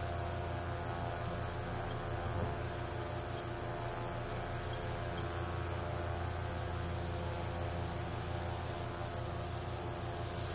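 Field crickets and other insects calling steadily: one unbroken high-pitched trill, with a second insect pulsing in an even, repeating beat a little lower, over a low steady hum.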